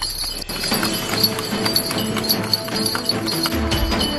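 A horse's hooves clip-clopping on the road as it pulls a delman, with background music playing over it.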